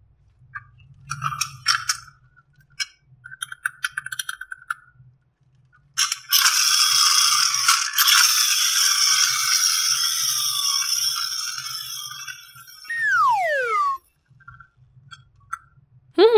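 Light plastic clicks and rattles of small toys being handled. About six seconds in comes a long, loud hissing whoosh that slowly fades and ends in a falling whistle glide, like a cartoon sound effect.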